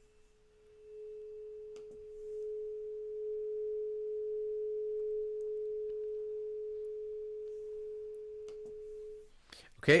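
A tuning fork marked 427 Hz rings one steady pure tone, which reads about 428 Hz, with a faint higher ring in the first two seconds. The tone swells over the first few seconds, fades slowly and cuts off about nine seconds in.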